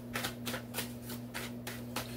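A tarot deck being shuffled by hand, the cards slapping in quick, even strokes about four or five times a second, over a low steady hum.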